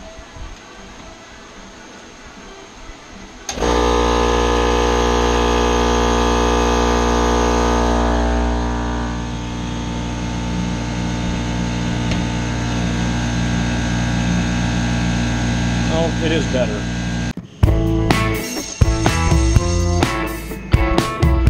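Electric air compressor starting abruptly about three and a half seconds in and running with a steady, loud hum inside a particleboard sound-deadening enclosure. Its running sound drops to a clearly lower level a few seconds later as the enclosure door is shut and latched. Near the end it cuts off to guitar music with drums.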